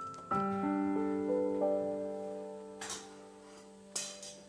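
Background piano music: a chord struck about a third of a second in, with further notes added and held, ringing slowly away. A brief soft noisy burst near the end.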